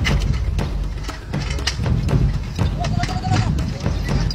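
Metal tent-frame poles knocking and clanking in quick, irregular strikes as they are fitted together, with voices.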